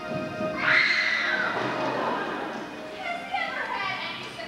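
A held musical chord breaks off and a loud yell with a commotion of voices follows for about two seconds, as performers scuffle and fall on a stage. A voice starts speaking near the end.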